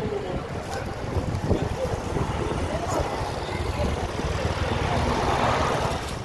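Busy city street noise: a steady rumble of traffic with voices mixed in.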